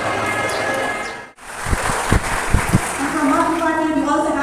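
Music playing over a public-address system in a large hall, cut off abruptly about a second in. A few low thumps follow, then a woman's voice comes over the PA near the end.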